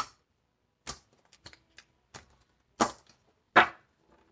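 A deck of tarot cards being shuffled by hand: about five sharp snaps of the cards, with lighter ticks between them, the last two loudest.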